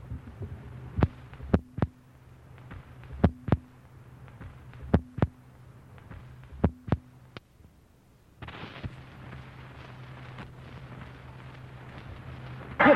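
Radio-drama sound effect of artillery fire: four pairs of sharp booms, each pair about a third of a second apart, coming every second and a half to two seconds over a steady low hum. The booms stop about seven seconds in, and a steady hiss follows.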